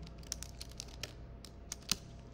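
Typing on a computer keyboard: an irregular run of quick key clicks, the loudest keystroke coming near the end.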